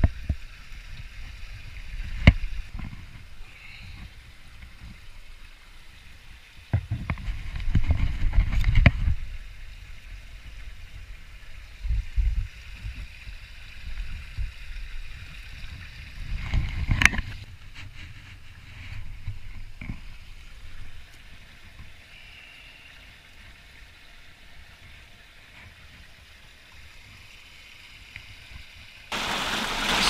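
Pond water sloshing and splashing as a concrete cinder block is scrubbed by hand underwater, in irregular bursts with a few sharp knocks.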